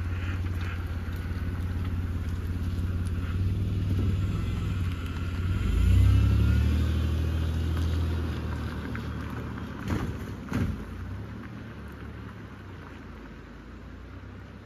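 Car engine revving as its wheels spin on gravel, loudest about six seconds in, then pulling away and fading into the distance. There are two short sharp knocks just after ten seconds.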